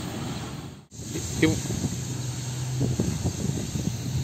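Steady outdoor hiss with a faint low engine hum, broken by a brief dropout about a second in.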